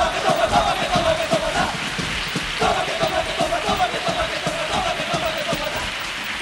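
A carnival murga's chorus shouting a long, held chant over a fast, regular drum beat, under dense applause-like clatter; the chant drops out about two seconds in and comes back shortly after.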